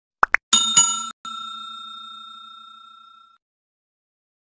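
Two quick mouse clicks, then a short bright chime and a bell-like ding that rings on and fades out over about two seconds: sound effects of a subscribe-button and notification-bell animation.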